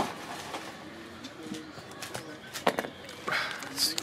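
Light taps and handling noise, then foil trading-card pack wrappers crinkling as they are picked up near the end. Earlier there is a faint soft cooing sound.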